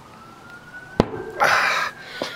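A tire bead snapping off a carbon mountain-bike rim as it is forced loose: one sharp crack about a second in, followed by a brief rush of rubbing noise. A faint siren wails, slowly rising and then falling.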